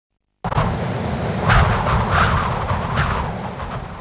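Wind blowing over the microphone: a steady low rumble with rushing noise and a few stronger gusts, starting abruptly half a second in.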